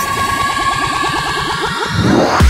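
Electronic dance-track breakdown: a dense flurry of quick, overlapping falling synth zaps over a low rumble, with a hiss swelling near the end.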